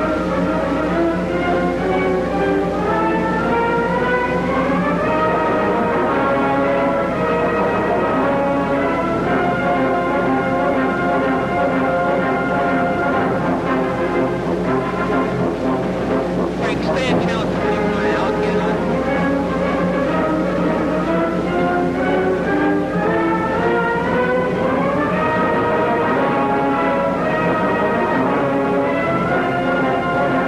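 Orchestral film music led by brass, playing phrases that climb in steps near the start and again near the end. A short crash-like passage comes a little over halfway through.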